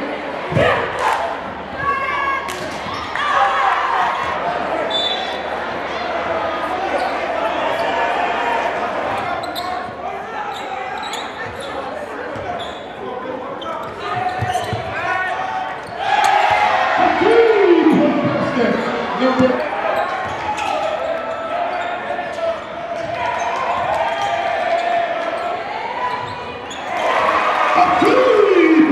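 Basketball being dribbled and bouncing on a hardwood gym court amid crowd voices and shouts in the gym; the crowd gets louder a little past halfway and again near the end.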